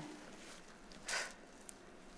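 A single short, breathy exhale about a second in, from the effort of a side-lying push-up, against faint room tone.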